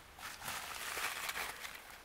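Plastic bubble wrap rustling and crinkling as it is handled, with a few faint ticks, fading near the end.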